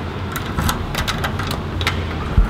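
Keys jangling and a key working in the lock of a glass entrance door: a run of light metallic clicks spread over the two seconds, over a low steady rumble.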